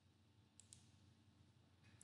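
Near silence: room tone, with two faint clicks close together a little over half a second in.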